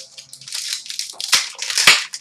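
Foil trading-card pack wrapper being crinkled and torn open, a busy crackling rustle that builds, with sharp crackles near the middle and near the end.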